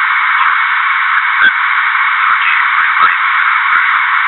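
Loud, steady radio-channel static hiss, thin and band-limited like a radio or phone line, with scattered clicks and crackles.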